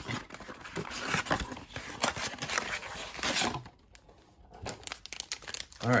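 A cardboard blaster box of trading cards being torn open by hand: cardboard tearing and packaging crinkling for about three and a half seconds, then a few light taps as the packs are set down on a table.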